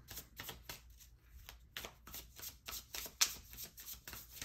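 A deck of tarot cards being shuffled by hand: a quick, irregular run of crisp card snaps and riffles.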